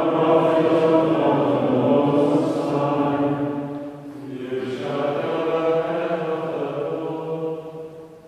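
Men's choir of Dominican friars singing plainchant, two sung phrases with a brief breath about four seconds in, the second fading away near the end.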